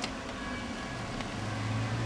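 Inside a stationary car: a steady low hum with faint music playing, and a light click at the start.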